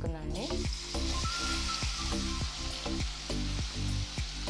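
Masala-coated paneer cubes hitting hot oil in a kadai. The sizzling starts suddenly about a third of a second in and keeps going steadily, over background music with a steady beat.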